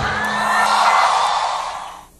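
A large concert audience cheering and applauding just after the music cuts off, swelling for about a second and then fading away.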